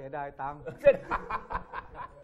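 A man laughing in a quick run of short, repeated chuckles, following a few spoken words.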